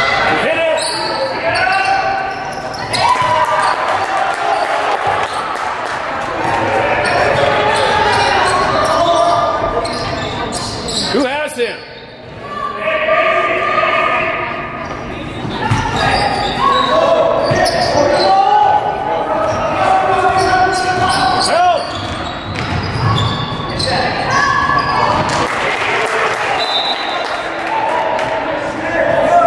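A basketball game on a hardwood court: the ball bouncing and knocking on the floor again and again, under steady shouting and chatter from players and spectators.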